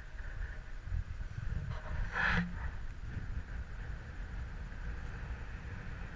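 Steady low rumble of road traffic and wind noise on the microphone, with one brief sharper sound about two seconds in.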